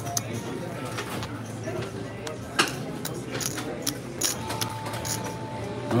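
Casino chips clicking against each other as the dealer picks them up and stacks them from the betting spots, a scatter of sharp clacks with the loudest about two and a half seconds in, over a low murmur of voices.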